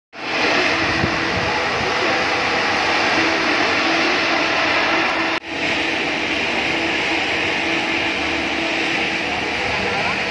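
Roadside misting fan running: a loud, steady hiss of blown air and water spray from its nozzles, with a faint motor hum underneath. The sound drops out for an instant about halfway through.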